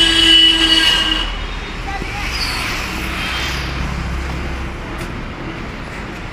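Road traffic going by with a steady rumble, and a high-pitched squeal with a low tone under it in the first second that stops about a second in.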